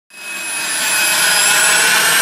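The single Williams FJ33 turbofan of a Cirrus SF50 Vision Jet running as the jet taxis. It makes a loud, steady rush with a high turbine whine of several thin tones that sag slightly in pitch, and it fades in over the first half second.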